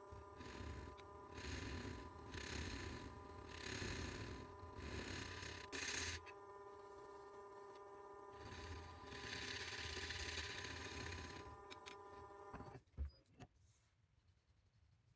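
Wood lathe running with a steady motor hum while sandpaper is pressed against the spinning resin-and-wood pendant in strokes, each stroke a rising and falling hiss. The lathe cuts off near the end, followed by a couple of short knocks.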